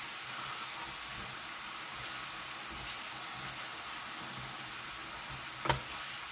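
Ground meat frying in a stainless steel skillet: a steady sizzle, with one sharp knock near the end.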